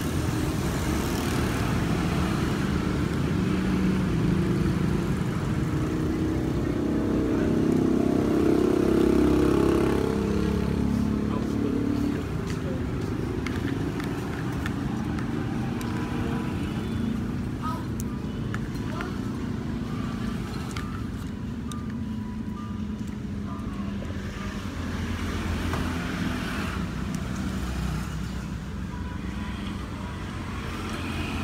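Street traffic: a steady rumble of passing road vehicles, swelling loudest about eight to ten seconds in as one passes close, with a few light clicks in the middle.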